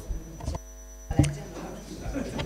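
Steady electrical mains hum in the meeting hall's microphone and sound system, with a few faint knocks and room noise.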